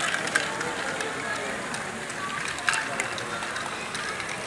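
LEGO Great Ball Contraption modules running: small plastic balls clicking and clattering through Technic lifts and chutes in irregular sharp clicks, the loudest near the start and a little past halfway. A background of indistinct voices runs underneath.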